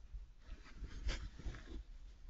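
Badger cubs shuffling in straw bedding inside a wooden sett chamber: rustling straw and soft, irregular bumps of bodies, with a brief louder rustle a little after a second in.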